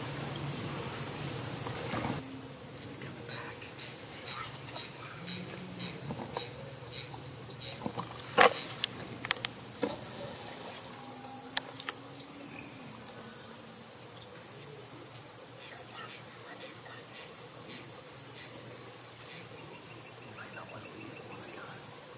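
A steady, high-pitched insect chorus. A run of faint ticks, about two a second, sounds in the first third, and a few sharp clicks fall near the middle, the loudest about eight seconds in.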